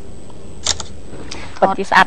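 Smartphone camera shutter click as a selfie is taken, once about two-thirds of a second in. A woman's voice starts speaking near the end.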